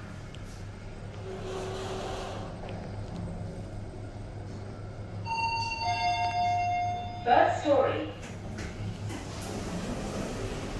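Toshiba passenger lift car travelling down with a steady low hum, then a two-note falling arrival chime about five seconds in. A short recorded voice announcement follows, and the car doors begin sliding open near the end.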